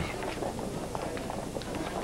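Footsteps of a crowd walking on a paved pedestrian street, shoes and heels tapping over a steady hum of street noise.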